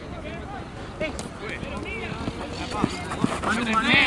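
Indistinct shouts and calls from several players on a football pitch, growing louder toward the end, with a few sharp knocks of the ball being kicked.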